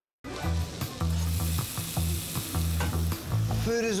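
Food sizzling and frying in a hot pan over a steady pulsing bass beat. It starts abruptly after a moment of silence.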